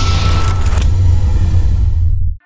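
Logo-reveal sound design: a loud, deep bass rumble with a whoosh and a single held tone over it, the whoosh and tone stopping about three-quarters of a second in while the rumble carries on.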